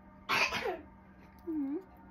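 A woman's sharp, breathy exhale with a falling pitch, like a sneeze or a forceful puff of breath, followed about a second later by a short, soft low 'hmm'.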